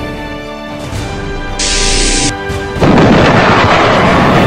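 Soundtrack music. A short hiss comes about one and a half seconds in, then a sudden loud explosion-like blast just before three seconds that keeps rumbling on.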